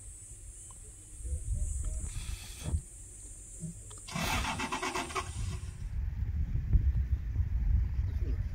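Safari vehicle engine: a low rumble throughout, and about four seconds in a burst of rapid, evenly spaced strokes as an engine turns over and starts.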